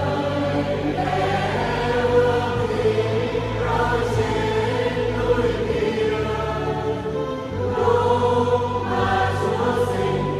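Mixed church choir of men and women singing a Vietnamese hymn in harmony, unaccompanied, with long held chords.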